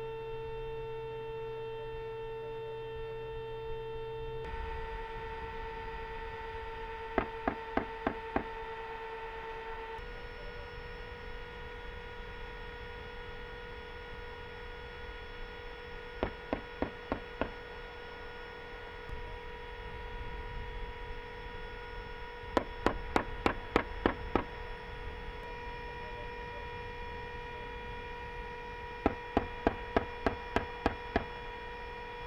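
Distant bursts of fire from a Bradley fighting vehicle's 25 mm chain gun: four bursts of about five to eight shots each, roughly three shots a second, the last starting near the end. A steady hum runs underneath.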